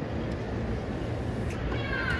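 Tennis rally heard from high in a packed stadium, over a steady crowd murmur. A racket strikes the ball about one and a half seconds in, followed near the end by a short, high-pitched grunt from the hitting player.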